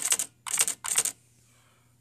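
IBM Wheelwriter 2 electronic daisy-wheel typewriter's mechanism clicking: a fast run of clicks that stops just after the start, then two short bursts of clicks about a third of a second apart, around half a second and one second in.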